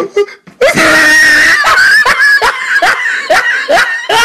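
A person's voice in a loud, prolonged vocal outburst, wild laughing or screaming, broken into short rising cries about two a second from about half a second in.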